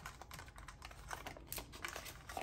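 Paper banknotes handled and sorted by hand: a run of faint, irregular light clicks and crinkles as bills are picked up and slid apart.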